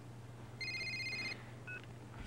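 Telephone ringing: one electronic trilling ring about half a second in that lasts under a second, then a brief beep near the end, over a steady low hum.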